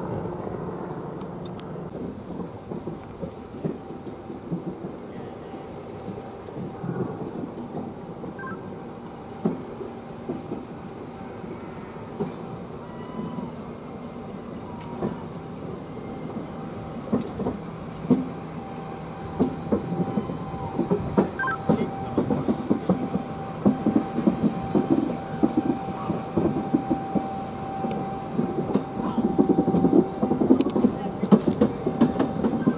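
A slow-moving rake of passenger coaches rolling into a platform, with a steady low rumble and a thin steady squeal, plausibly the wheels on the curve. Wheel clicks over the rail joints and points grow louder and more frequent in the second half as the coaches draw alongside.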